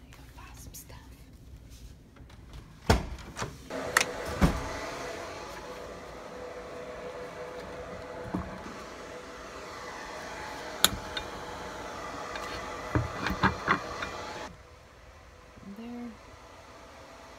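A door latch clicks and the door knocks several times, then a steady machine hum runs for about ten seconds and cuts off suddenly, with a few more clicks near the end.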